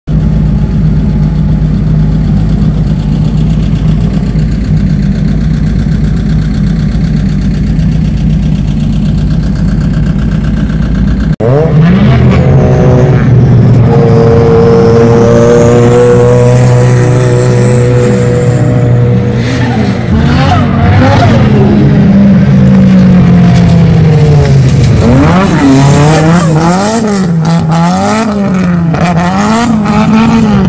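A car engine idles steadily and loudly for about the first 11 seconds. After an abrupt cut, drift car engines rev hard as the cars slide through corners, the pitch climbing and falling. Near the end the revs swing up and down about one and a half times a second while the car holds a drift.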